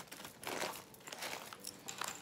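Fabric ribbon rustling and crinkling as hands fold and pinch its loops together, with scattered small crackles. It is loudest about half a second in.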